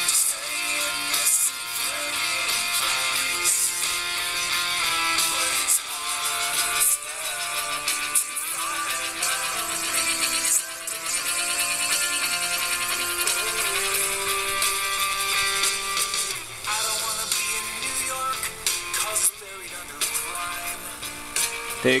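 A song with guitar and singing played through the arcs of an audio-modulated Class E Tesla coil, whose sparks act as the loudspeaker while they drive the ion motor.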